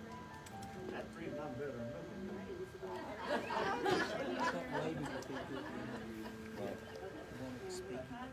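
Indistinct chatter of several people in a room, with music under it. The voices get louder and more tangled for a couple of seconds about three seconds in.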